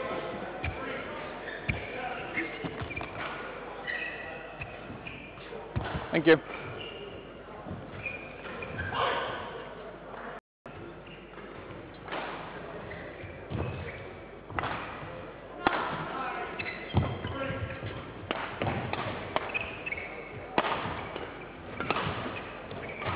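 Badminton play in a sports hall: sharp racket strikes on the shuttlecock and players' footfalls on the court, irregular and echoing, with voices in the background.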